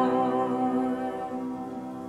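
Upright piano notes held and ringing, fading slowly with no new notes struck.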